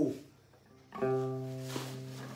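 A single string of an amplified đàn nguyệt (Vietnamese moon lute) plucked once about a second in, its note ringing on through the plugged-in speaker and slowly fading.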